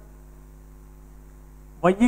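Steady electrical mains hum, a low tone with a stack of evenly spaced overtones, heard during a pause in a man's speech. His voice comes back near the end.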